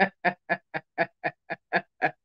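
A woman laughing in a quick, even string of short "ha" bursts, about four a second.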